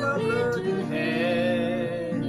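Hymn singing: a voice holding long, wavering notes over a steady instrumental accompaniment.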